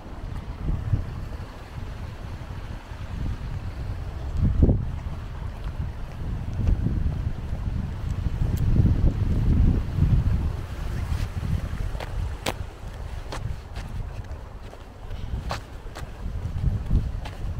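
Wind buffeting the microphone outdoors: an uneven, gusting low rumble that rises and falls, with a few short sharp clicks in the second half.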